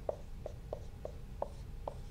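Marker writing on a whiteboard: a string of short, separate ticks as each stroke of the letters is drawn, about six in two seconds.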